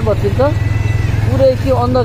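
A motorcycle running on the move, a steady low rumble of engine and wind, with a person's voice over it at the start and again in the second half.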